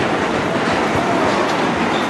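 Fairground ride with caged cars running, a steady metallic rattling and clatter of the cars and track.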